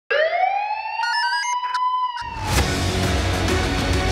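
Opening of a dramatic crime-show theme: a rising, siren-like synth wail with a few short electronic blips, then the full music comes in with heavy bass and a sharp hit about two and a half seconds in.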